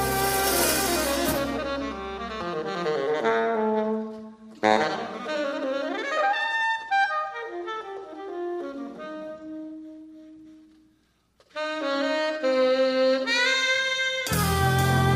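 Live jazz: the band plays until about two and a half seconds in, then drops out, leaving an unaccompanied tenor saxophone cadenza of runs and held notes. The saxophone stops briefly near the end, then resumes.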